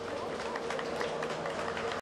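Indistinct background voices over a steady hum, with many short clicks scattered through it.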